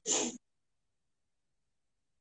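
A man's single short sneeze, under half a second long, followed by complete silence.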